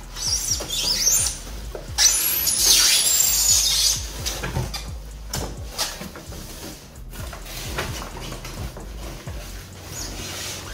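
Cardboard rustling and scraping as a large flat-pack furniture box is pulled open and its contents handled, loudest in two stretches over the first four seconds, then lighter rustles and taps.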